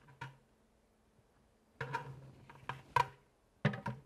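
A large plastic bucket set down on the platform of a digital shipping scale: a few light knocks and clatters about two seconds in, another sharp knock at three seconds, and a last clatter near the end.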